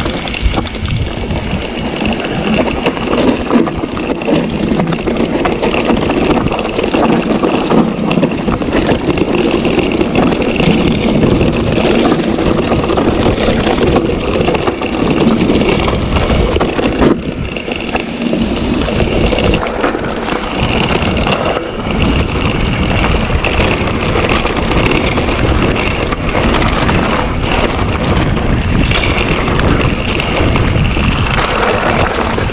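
Mountain bike clattering and rattling continuously over a rough, rocky dirt trail, with wind rushing over the action camera's microphone.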